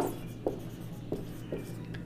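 Marker pen writing on a whiteboard: a few short, faint strokes as numbers and letters are written, over a steady low hum.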